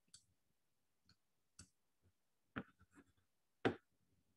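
Faint, scattered clicks, about seven over four seconds, the sharpest two about two and a half seconds in and near the end.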